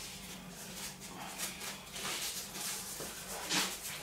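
Quiet handling noises: light rustles and clicks as hair is sectioned and pinned with hair clips, with a slightly louder rustle near the end, over a steady low hum.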